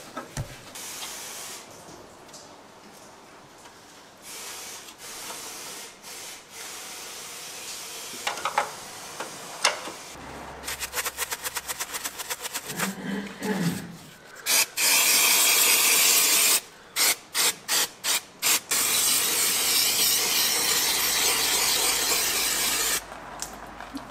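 Aerosol cleaner can sprayed onto a tank gearbox housing during cleaning: a long hiss, a string of short bursts, then a long steady spray, which is the loudest sound. Before it, quieter ticking and clicking of hand tools on metal, with a quick run of rapid clicks about ten a second.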